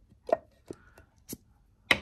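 Light clicks and taps from a hand handling a three-wick candle, its metal lid knocking against the glass jar: about five short knocks in two seconds, the loudest about a third of a second in and another just before the end.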